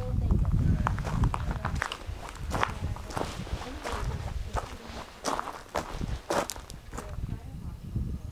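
Footsteps of a person walking over dirt and scattered wood chips, an irregular series of crunches and scuffs, with a low rumble in the first couple of seconds.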